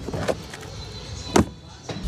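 Low rustling as a car seat cushion is handled, with one sharp click about one and a half seconds in.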